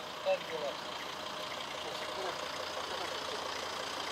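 Steady hum of street traffic and vehicle engines, with a short voice about a third of a second in and a few faint distant voices after.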